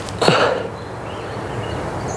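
A short breathy vocal grunt or exhale from the thrower, falling in pitch, a moment in, followed by steady outdoor background noise.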